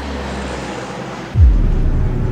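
Cinematic trailer sound design: a hissing swell builds, then about 1.4 s in a sudden deep bass boom hits, dropping in pitch and hanging on as a low ominous drone.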